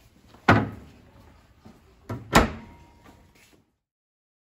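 Wooden cupboard door slammed shut: a sharp bang about half a second in, then a light knock and a second bang of about the same loudness near the middle.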